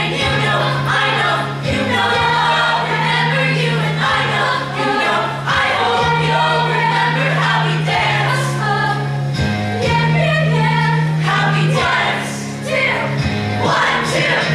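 Mixed show choir singing an upbeat pop arrangement over instrumental accompaniment, with a bass line moving in long held notes.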